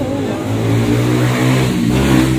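A motor vehicle engine running steadily: a low hum of even pitch that comes in strongly about half a second in.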